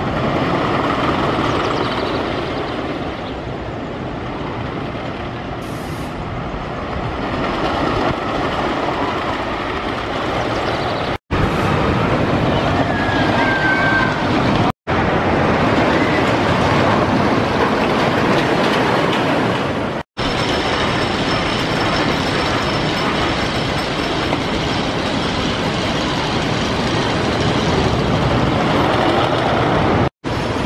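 Wooden roller coaster train rumbling and clattering along its track, a steady, loud run of noise. The sound cuts out for an instant three times.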